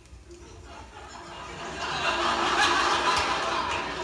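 Audience laughter on a 1967 comedy record playing on a turntable, swelling from quiet about a second in to a full laugh near the end.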